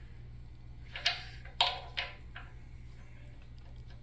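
About four light, sharp metallic clicks and knocks in the first half, the second the loudest, as a steel sleeve tool is worked by hand onto the crankshaft nose at the timing chain cover, over a steady low hum.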